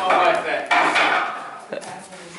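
A wooden wing chun dummy being struck by hand, giving sharp wooden knocks, two of them plain about a second apart.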